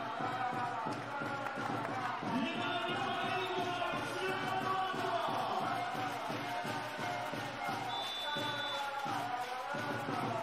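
Arena crowd chanting along with music and an even beat. A brief high whistle sounds near the end.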